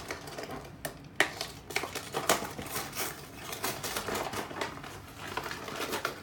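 Clear plastic blister packaging crackling and clicking in the hands as die-cast toy cars are taken out of an opened three-pack, with a sharp click about a second in.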